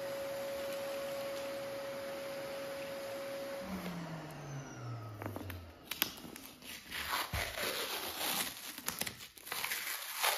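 Vacuum cleaner running with a steady whine, switched off about four seconds in and winding down with a falling hum. Then adhesive tape being peeled off a wooden floor and crumpled, a run of crackling, tearing and crinkling.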